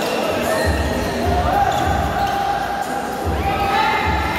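Basketball being dribbled on a hardwood gym court, low thuds about every half second or so, echoing in a large hall with voices calling.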